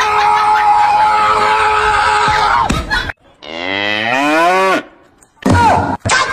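Cow mooing, dubbed in as a comic sound effect: a long moo held on one steady pitch for about two and a half seconds, then a shorter moo that rises in pitch. A brief loud sound follows near the end.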